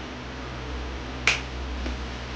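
A single sharp click about a second in, over a steady low hum and hiss.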